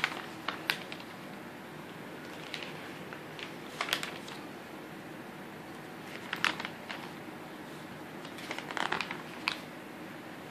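Glossy catalog pages being turned and handled: short crinkling, rustling bursts of paper, about half a dozen, separated by quiet gaps.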